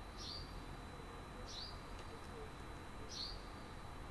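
A bird chirping faintly in the background, a short high note that drops slightly in pitch, repeated four times about a second and a half apart.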